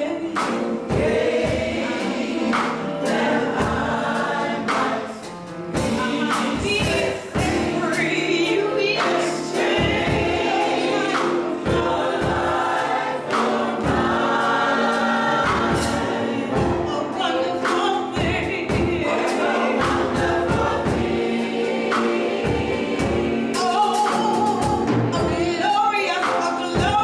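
A gospel choir singing together, accompanied by piano and drums.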